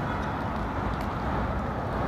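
Steady city street traffic noise: a low rumble with an even hiss above it.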